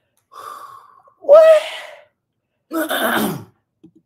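A woman laughing and gasping in three short bursts: a breathy gasp, a pitched cry about a second in, then a rough, noisy burst of laughter near the end.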